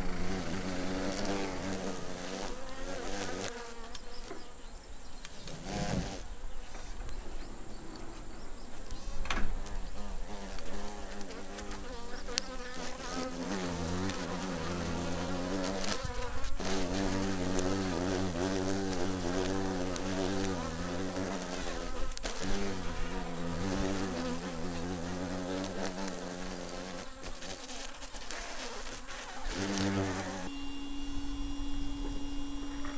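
Wing buzz of Western honey bees flying at their hive entrance, rising and fading as they come and go. From about the middle to near the end, a deeper buzz joins it: a giant hornet hovering at the entrance to raid the colony.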